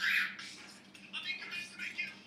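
A person's quiet, breathy voice: a short hissing breath right at the start, then soft whisper-like sounds about a second in, over a faint steady hum.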